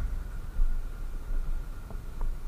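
Steady low rumble of a motorcycle on the move, with wind noise on the microphone.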